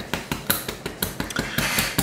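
Repeated sharp, irregular taps and clicks, several a second: a fly-tying hair stacker being rapped on the bench to even up the tips of a bunch of calf-tail hair.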